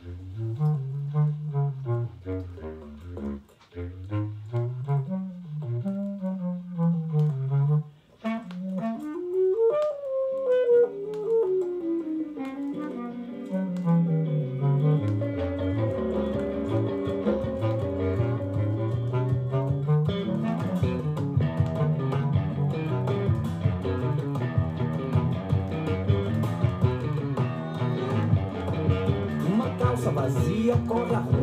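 A South American 7-inch vinyl record playing through a home hi-fi's speakers, starting at the needle drop. It opens with a swooping, sliding melodic line broken by two brief gaps, then more instruments join and the full band fills out about twenty seconds in.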